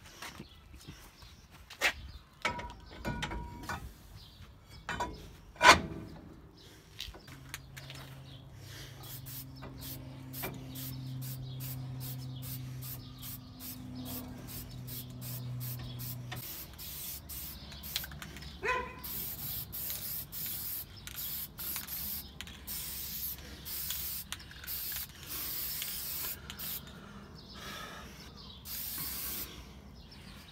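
Aerosol spray paint hissing in repeated short bursts as a steel brake drum is sprayed, over the second half. Before it come sharp knocks and clanks of handling the brake parts, the loudest about six seconds in, then a steady low hum for several seconds.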